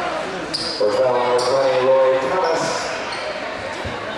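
Basketball game in a gym: crowd voices with one long shout starting about a second in, sneakers squeaking briefly on the hardwood court, and a ball bounce near the end, all echoing in the large hall.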